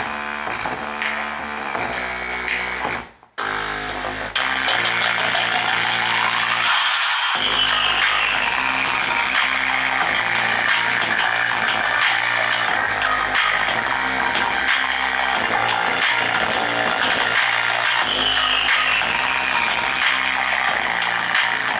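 Music with guitar and an electronic beat, played from a phone through a homemade 2SA1943 and BD139 transistor amplifier into a woofer. The music cuts out briefly about three seconds in, then comes back louder and stays steady.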